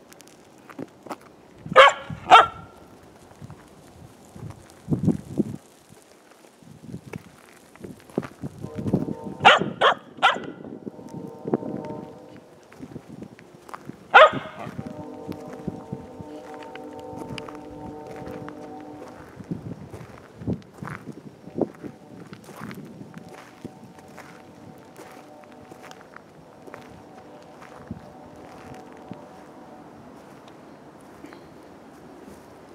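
Sheltie puppy barking: a handful of short, sharp barks, a pair about two seconds in, another pair near ten seconds and one more near fourteen seconds, with quieter barks and sounds between. Steady sustained tones at several pitches run under the second half.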